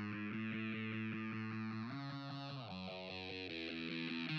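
Instrumental intro of a pop-rock song: an electric guitar through effects plays a quick, evenly pulsing chord pattern. The chord changes about two seconds in and twice more after that, with a falling sweep near the end.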